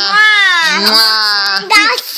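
A young child's voice in one long drawn-out wail, its pitch dipping and then rising, followed by a short high cry near the end.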